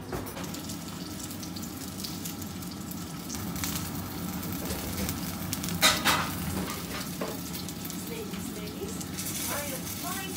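Fish-paste-stuffed bell pepper pieces frying in oil in a non-stick pan: a steady sizzle with fine crackles. A sharp knock comes about six seconds in.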